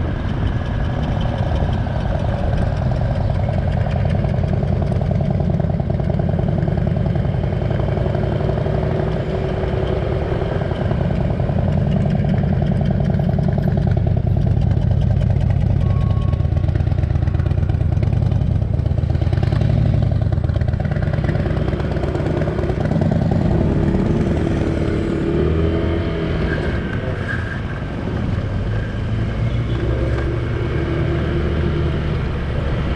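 Onboard sound of a motorcycle ridden on the road: its engine running under a constant low rumble of wind and road noise. The engine note rises and falls as the bike slows and picks up speed again.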